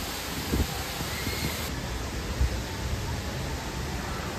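Steady rushing of water from the Palais Longchamp cascade fountain, with irregular low rumbles underneath.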